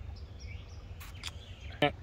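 Outdoor background: a steady low wind rumble with a few faint bird chirps and a couple of light clicks about a second in, then a brief vocal sound near the end.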